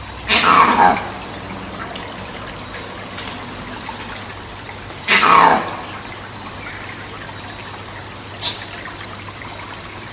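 Monkey screams: two loud calls, each under a second long and falling in pitch, about five seconds apart, with a brief sharp high call near the end. Behind them runs a steady trickle of water.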